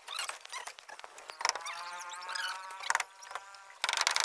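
A hammer knocking on wooden shuttering boards, a few separate blows. In the middle, a long pitched call lasting over a second sounds in the background.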